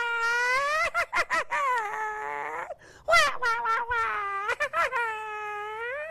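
A man's high falsetto voice imitating a child crying: long drawn-out wails broken by short sobbing gasps, with a brief pause midway.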